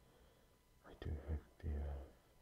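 A man's soft, low whispered voice, starting about a second in after a brief quiet pause.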